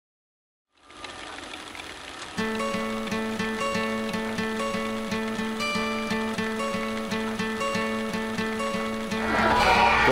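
Song intro: music fades in about a second in, and at about two and a half seconds a repeating melody over a steady, evenly pulsed low note begins. Near the end the music gets louder and fuller.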